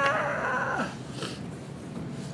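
A man's drawn-out, wavering vocal sound, not words, that bends down in pitch and dies away about a second in.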